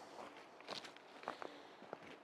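Faint footsteps of a person walking on a dirt forest trail, a few crunching steps about half a second apart.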